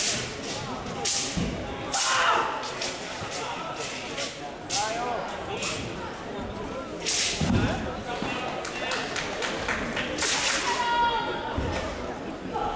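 Nandao broadsword swung fast through the air, giving a string of short, sharp swishes, with occasional thuds of stamps and landings on the competition mat. Voices talk in the hall behind.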